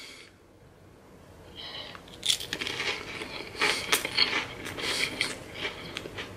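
A saltine cracker topped with tuna salad being bitten and chewed, giving a run of crisp, irregular crunches that starts about two seconds in and goes on for a few seconds.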